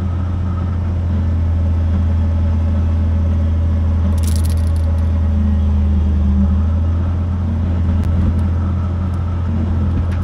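A 6x6 wrecker's engine running steadily at idle with a deep low hum, powering the boom as the hook and chain are lowered into a trench. A short sharp noise comes about four seconds in.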